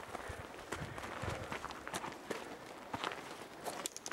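Footsteps over stony ground and dry brush: irregular steps with small knocks and crackles.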